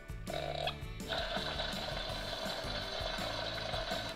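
Electronic fire-spirit sound effect from a Frozen 2 Walk & Glow Bruni plush toy's small speaker: a steady hiss that starts briefly, pauses, then runs on from about a second in. Soft background music plays underneath.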